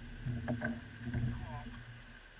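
Dull low thuds and knocks against a small boat's hull, in two clusters about half a second and a second and a quarter in. They come from the angler shifting his weight and moving in the boat while playing a hooked fish.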